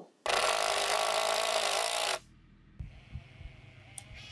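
Cordless drill driving a decking screw into a 2x4, running steadily for about two seconds and then stopping abruptly, followed by a few faint knocks.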